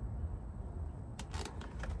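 A few faint, short clicks and rustles of gloved hands handling the battery cable terminals in a truck's battery box, over a low steady background rumble.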